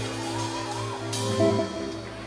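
A live band's closing chord on electric and acoustic guitars, keyboard and drums, ringing out and fading as the song ends. A single sharp drum or cymbal hit comes about a second in.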